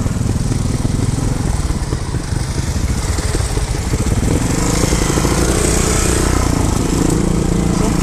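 Trials motorcycle engine running at low revs as the bike is ridden slowly down a forest trail, the revs rising and falling a little in the middle.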